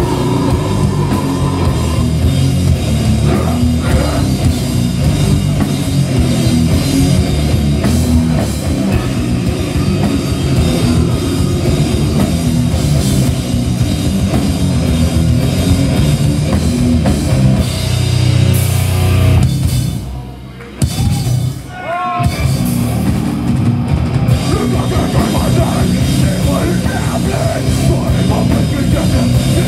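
Live metalcore/hardcore band playing loud: heavily distorted guitars, bass and a pounding drum kit with cymbals. A little past two-thirds of the way through the band cuts out for about two seconds, then crashes back in.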